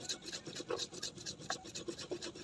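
Stone roller grinding whole garam masala spices (cinnamon, cardamom, black peppercorns, cloves) on a flat stone slab: quick, regular gritty rubbing strokes of stone on stone.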